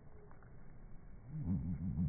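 Australian magpie call slowed down to a deep, wavering drone, rising in about a second in and loudest near the end.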